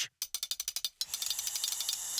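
Metal snake tongs clacked open and shut in a quick run of sharp clicks, turning about a second in into a denser, continuous rattle with a hiss.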